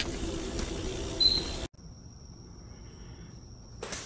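Steady wind and rolling noise from riding a recumbent trike, with a brief high tone just after a second in. It cuts off abruptly and gives way to a quiet stretch with a faint, steady high-pitched whine.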